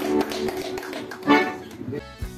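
Piano accordion and acoustic guitar holding the final chord of a gaúcho song, which fades away; a brief voice cuts in about a second and a half in.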